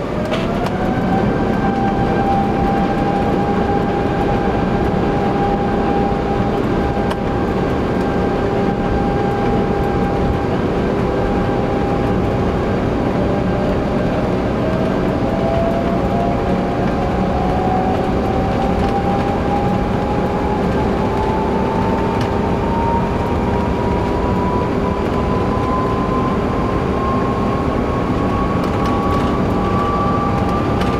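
Airbus A350-900 on its takeoff roll, heard inside the cabin. Its Rolls-Royce Trent XWB engines spool up to takeoff thrust, a tone jumping up in pitch about half a second in, then run steadily over a loud rumble, while a second whine climbs steadily in pitch as the aircraft gathers speed.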